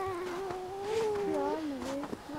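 A drawn-out, high-pitched wailing voice. It holds one note, then steps lower just over a second in and carries on in shorter held notes.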